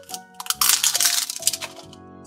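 Plastic Mashems blind capsule twisted open by hand: a quick run of sharp plastic cracks and clicks from about half a second in to about a second and a half, over background music.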